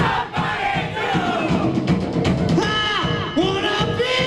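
Live rock band playing while the crowd sings a wordless chant along with it, many voices rising and falling together over the bass and drums.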